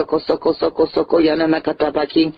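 Speech only: a voice uttering fast, evenly repeated syllables, speaking in tongues.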